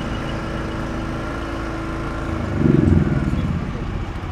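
Engine of a food-safety testing van idling: a steady low rumble with a steady hum over it, swelling louder for a moment about two and a half seconds in.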